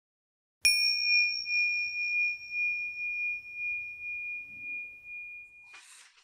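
A single struck bell chime: one sharp strike, then a high, pure ringing tone that pulses gently as it slowly fades, cut off near the end.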